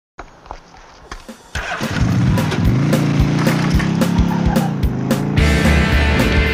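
A motorcycle engine revving up and back down as a sound effect in the intro of a rock song, over a steady drum beat. About five seconds in, the full band with bass comes in.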